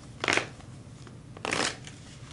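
Tarot cards being shuffled in the hands: two short papery rustles, about a second apart.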